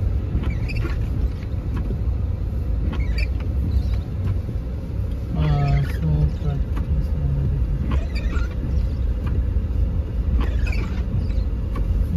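Steady low rumble of a car driving, heard from inside the cabin, with its tyres running on a snow-packed street.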